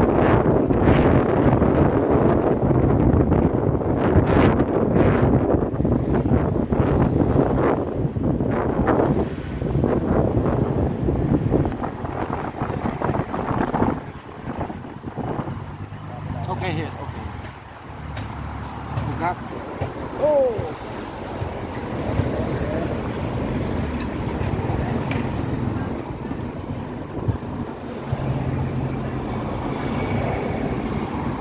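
Street traffic with wind buffeting the microphone while moving along a road: loud and gusty for the first dozen seconds or so, then quieter, with low engine hum from passing vehicles.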